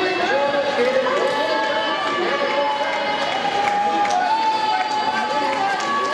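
A crowd of spectators shouting and cheering, many voices overlapping, with some long drawn-out calls in the middle.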